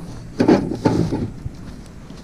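Cardboard box being handled and pulled open, with two short scraping, rustling bursts about half a second and one second in.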